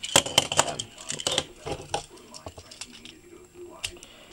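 Hard plastic Transformers Power Core Combiners figures clicking and rattling as they are picked up and handled: a quick flurry of clicks in the first second and a half, then scattered single clicks.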